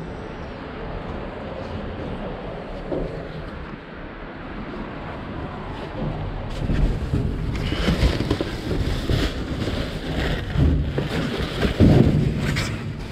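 Muffled rustling and handling noise as a person climbs into a steel dumpster. From about six seconds in, plastic bags and styrofoam packaging crinkle and crackle loudly with many small clicks as the person steps and digs through them.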